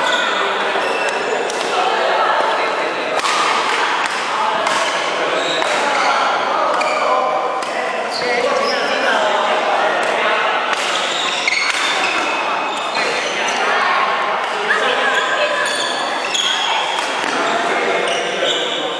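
Badminton rally in a large echoing sports hall: rackets striking the shuttlecock in sharp repeated hits, mixed with short high squeaks of shoes on the wooden court floor.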